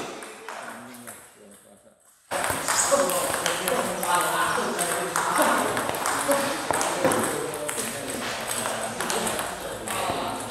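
Table-tennis balls struck in a multi-ball practice drill: a fast run of sharp clicks of celluloid/plastic ball on bat and table, with voices in the hall. Fainter clicks at first, then suddenly much louder and denser about two seconds in.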